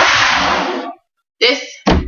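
A large plastic water jug grabbed and lifted close to the microphone: a loud rustling scrape of handling lasting about a second, then a short thump near the end.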